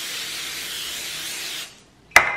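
Pam cooking-spray aerosol can spraying a steady hiss onto a disposable aluminum foil pan, dying away near the end.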